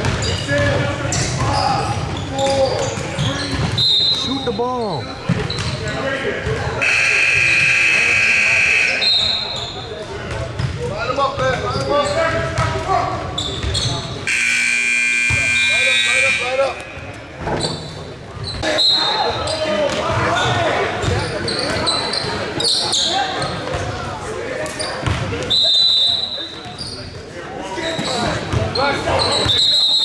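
Basketball game in a large echoing gym: balls bouncing, sneakers squeaking and players and spectators shouting. A scoreboard buzzer sounds twice, for about two seconds each time, a third of the way in and again about halfway through.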